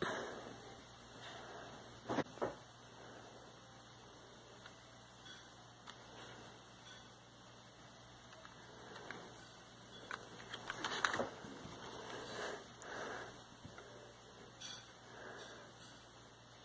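Quiet clicks and rattles of LEGO plastic as a brick-built pistol is handled and its working slide is moved: a sharp click about two seconds in and a cluster of clicks around eleven to thirteen seconds.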